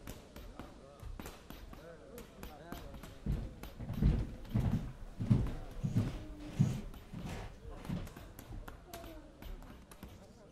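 A run of about six heavy, evenly spaced thuds, roughly two-thirds of a second apart, in the middle of the clip. Under them are low, indistinct men's voices and scattered small clicks.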